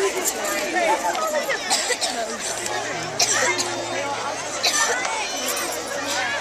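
Many young children talking and calling out at once, an overlapping babble of small voices, with a few brief sharp noises standing out above it.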